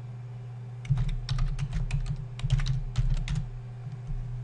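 Typing on a computer keyboard: a quick run of about a dozen keystrokes starting about a second in.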